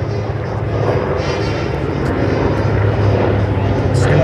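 Grumman TBM Avenger's Wright R-2600 radial piston engine and propeller droning on a low pass, growing steadily louder as the plane approaches.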